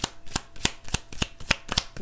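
A deck of oracle cards being shuffled by hand: a quick, even run of card slaps, about three a second.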